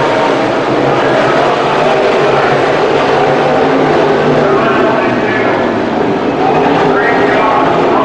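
Engines of dirt-track modified race cars running hard at racing speed: a loud, steady engine noise with no let-up as the cars race down the straight and into the turn.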